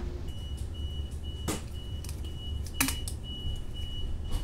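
Steady low hum of a train carriage interior, with a short high electronic beep repeating about twice a second. Two sharp handling knocks, about a second and a half in and again near three seconds.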